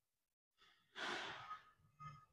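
A person sighing out one long breath, about a second long, with a fainter breath sound just before it: a relaxing exhale.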